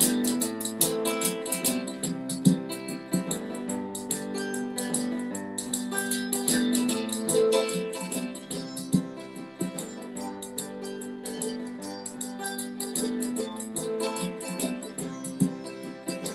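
Mandolin played over a looper: picked mandolin notes over sustained, layered looped parts, with a quick, steady ticking rhythm running through the loop.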